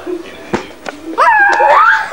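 Domestic tabby cat giving one long, loud meow starting just past a second in, holding its pitch and then rising near the end. A short click comes earlier.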